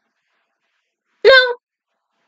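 A single short voiced cry, about a third of a second long, a little over a second in.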